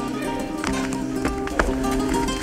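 Live instrumental music from a carnival comparsa's band: Spanish guitars with held notes over a steady low line, and a few drum strikes, the loudest about one and a half seconds in.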